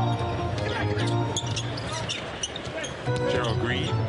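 Live basketball court sound in an arena: music with held low tones playing over the PA while the ball is brought up, with short high sneaker squeaks on the hardwood.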